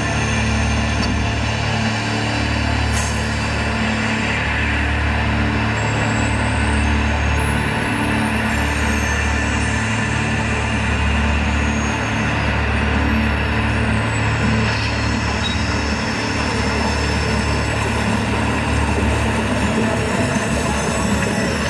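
The projection-mapping show's soundtrack playing over outdoor loudspeakers: music with a steady pulsing bass, mixed with train-running sound effects. In the middle a high sweep rises and then falls.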